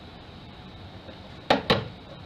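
Quiet room tone, then two sharp knocks about a fifth of a second apart, about one and a half seconds in.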